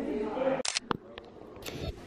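A voice talks briefly, then two short, sharp clicks or clatters about a second apart, with lighter ticks between them.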